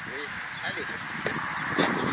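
Indistinct background voices of people talking, quieter than the nearby speech and louder again near the end.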